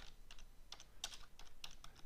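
Faint typing on a computer keyboard: a quick, uneven run of keystrokes as a word is typed.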